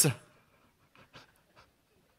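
The last syllable of a man's speech, then near quiet with a few faint, very short breath or mouth sounds about a second in.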